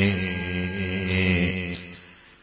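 A man's voice holding one long sung note of an Arabic devotional chant, fading out near the end. A steady high-pitched whine runs under it.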